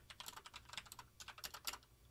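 Faint keystrokes on a computer keyboard: about a dozen quick, uneven key clicks as a short line of code is typed.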